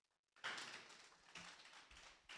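Near silence, with a brief faint rustle about half a second in that fades away.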